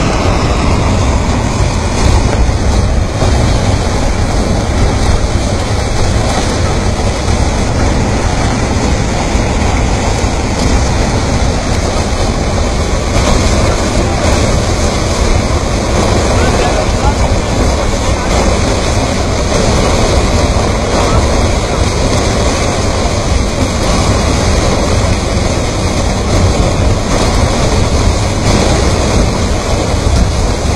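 Muddy flood torrent carrying stones down a mountain channel, rushing loudly and steadily with a deep rumble underneath.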